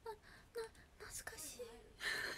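A young woman's voice, soft and quiet, in short broken murmured syllables: low-voiced talk between louder sentences.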